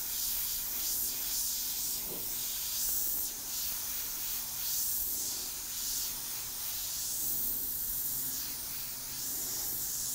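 Airbrush spraying paint: a steady hiss of air and paint at the nozzle that swells and eases in short passes.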